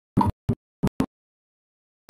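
Audio cutting in and out: about seven brief fragments, each a fraction of a second long, separated by dead silence.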